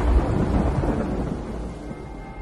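Thunder rumble with a storm hiss, a sound effect under the logo sting, fading steadily away.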